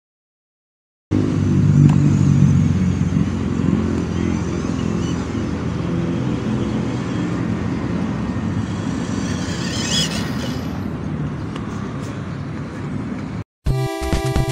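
Small electric motor and gears of a toy-grade 1/12 MN-96 RC crawler running steadily as it drives, starting about a second in and cutting off suddenly near the end. A brief higher rasp comes about ten seconds in.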